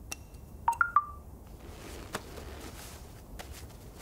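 A mobile phone notification chime: three quick electronic tones, stepping up and then back down, about a second in. A few faint clicks follow. The alert announces that the ride-hailing driver has arrived.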